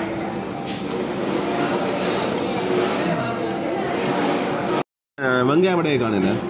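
Indistinct talking throughout. The sound cuts out completely for a moment near the end, then a man's voice comes in with a pitch that swings up and down.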